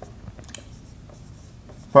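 A whiteboard marker writing on a whiteboard: faint short scratching strokes, with one sharper stroke about half a second in.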